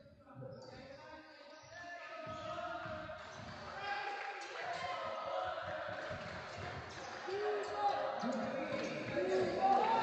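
Basketball dribbled on a hardwood court, with repeated short bounces, and the voices of players and onlookers in the gym rising about two seconds in.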